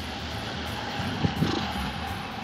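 Outdoor parking-lot noise: a steady rush of traffic, with wind rumbling on the phone's microphone and two short knocks a little past the middle.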